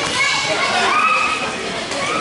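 Overlapping children's voices: calls and chatter from many kids at once, with no single speaker standing out.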